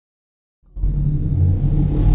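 After about half a second of silence, a loud deep rumble sets in suddenly and holds steady: the opening of a cinematic logo-intro sound effect.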